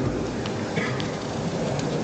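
A steady noisy hiss of room and microphone noise in a pause between speech, with a few faint rustles such as paper being handled.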